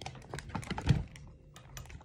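A quick run of small clicks and taps with one louder knock about a second in. It is handling noise from a hand moving right next to the phone's microphone.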